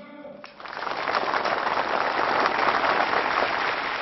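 A large crowd applauding in answer to slogans over the loudspeakers. The clapping starts about half a second in, swells over the next second and then holds as a dense, steady wash.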